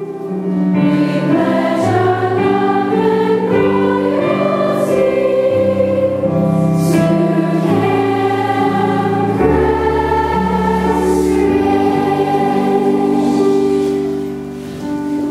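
Music: a choir singing over instrumental accompaniment in long held notes, swelling louder about a second in.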